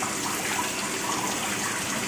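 Steady running water: an even, continuous rushing hiss.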